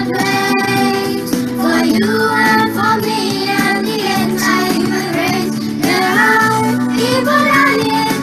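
A group of children singing a slow song together with instrumental accompaniment.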